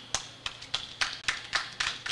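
Light, scattered clapping from a few people in the audience: a run of sharp claps, about four a second.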